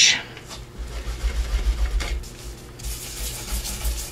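An ink blending brush scrubbing over embossed paper in short repeated strokes, a dry scratchy rubbing, as vintage-photo ink is worked over the raised texture to bring it out.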